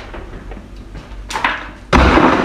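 Handling noise from packaging and containers: a short rustle about a second and a half in, then a sharp knock just before the end.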